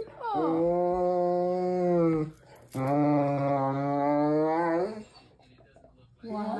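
A large black dog gives two long, drawn-out, low vocal moans of about two seconds each, steady in pitch, one shortly after the other.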